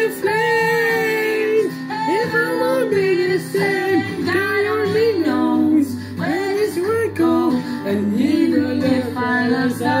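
A song: a voice singing a melody with long held notes over steady instrumental accompaniment.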